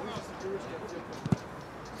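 A football kicked once, a single sharp thud about a second in, over low outdoor background noise.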